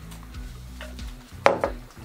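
Quiet background music with steady low notes, and a single sharp knock about one and a half seconds in as a plastic cup is set down on a wooden table.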